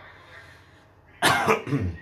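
A man coughing: a short bout of loud coughs starting a little over a second in, after a moment of quiet.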